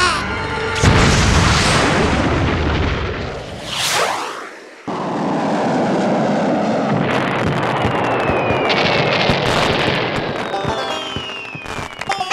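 Cartoon sound effects over music: a loud boom about a second in, a whooshing pitch sweep near four seconds, then a steady rushing noise with two falling whistles.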